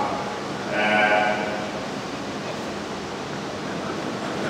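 A single drawn-out voice sound about a second in, over a steady background hiss of the hall.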